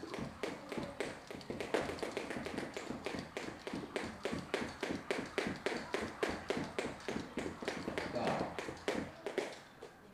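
Two speed jump ropes turned fast in alternate-step speed skipping: rapid, even ticks of the ropes slapping the floor, mixed with quick foot landings, several a second. They stop shortly before the end.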